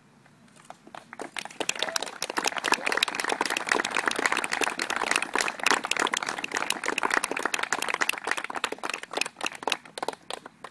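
Guests applauding: the clapping starts about a second in, quickly builds to a full round and thins out near the end.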